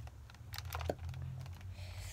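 Scattered light clicks and knocks from a hollow plastic gun-shaped PS3 controller attachment being handled and shifted in the hands.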